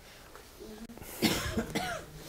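A person coughing once, a short rough burst lasting under a second, about a second in.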